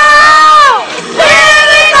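A group of young people yelling together in a van, very loud: one long, held yell that falls away just under a second in, and a second begins about a second later.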